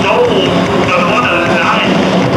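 A rock band playing live and loud, with heavily distorted, squealing guitars and a singer's voice in a dense, continuous wall of sound.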